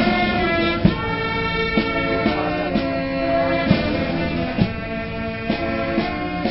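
Brass band music: held brass chords over a steady struck beat about once a second.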